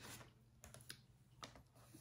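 Near silence with a few faint, short taps and clicks as cardstock is positioned on a paper trimmer.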